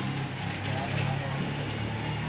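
Street sound of a motor vehicle's engine running, a steady low hum, with faint voices in the background.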